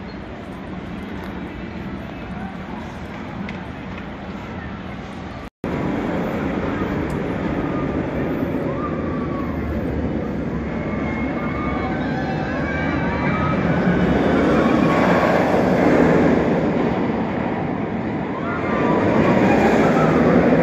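Steel roller coaster train running along its track, a loud rumbling rush that builds and comes in waves, loudest in the second half. Before it, about five seconds of quieter outdoor park background ending in a sudden cut.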